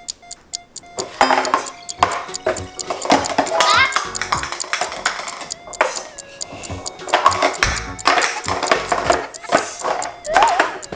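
Plastic speed-stacking cups clacking rapidly against each other and the table as they are stacked and a stack tumbles down, with music and a voice over it.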